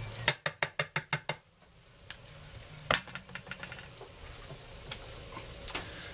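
Metal kitchen tongs clicking against a glass baking dish: a quick run of about seven clicks, then a louder one and a few lighter ones. Hot bacon fat sizzles faintly underneath.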